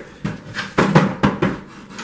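A handful of short knocks and clicks with some rubbing, the sound of objects being handled and set down.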